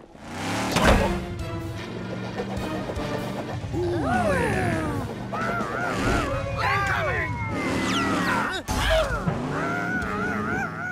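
Animated cartoon soundtrack: music with a sharp crash-like hit about a second in, then a run of gliding, wavering pitched sound effects over the music.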